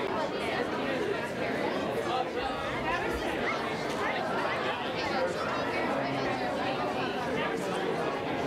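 Crowd chatter: many people talking among themselves at once, the voices overlapping into a steady murmur.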